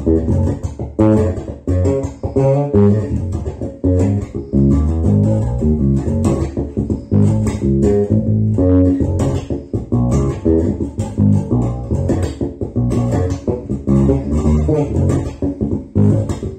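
Four-string electric bass guitar played fingerstyle: a continuous run of plucked notes.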